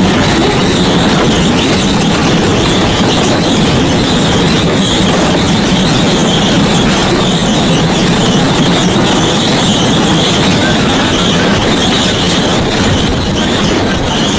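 Wheels of a single-seat toboggan cart running along its track: a loud, steady rolling noise with a constant high-pitched whine over it, easing slightly near the end as the cart slows into the station.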